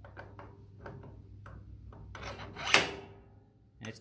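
Stainless steel star-shaped feeder rotor of a samosa machine's filling pump being slid down onto its keyed shaft: a few light metal clicks, then a scraping slide that ends in one clunk as it seats, a little under three seconds in.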